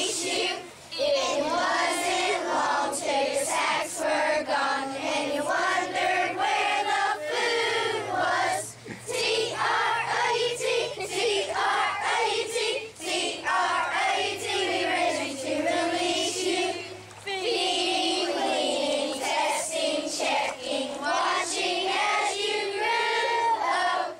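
A large group of children singing together in unison, in phrases with short breaks for breath between them.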